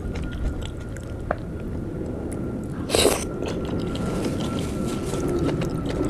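Close-miked chewing of a curry-soaked piece of luchi (puffed fried bread), with wet mouth sounds and small clicks. About three seconds in there is one short, loud sharp sound, the loudest moment.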